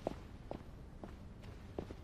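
Footsteps on a hard floor at an unhurried walking pace, about two soft knocks a second.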